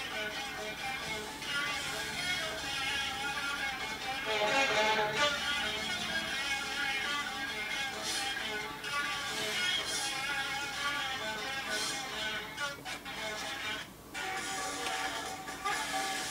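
A 45 rpm pop single playing on the Sanyo music centre's record player, near the end of the side. The music is heard through the unit's own speaker and includes guitar.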